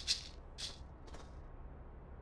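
Maracas shaken in three short, separate rattles, the last one fainter, then quiet room tone.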